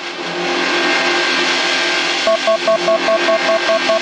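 Algorithmically generated electronic music from TidalCycles patterns played through SuperCollider with Digitakt samples: a loud, dense noisy drone over low held tones. About two seconds in, a high pulsed tone with clicks joins, repeating about five times a second.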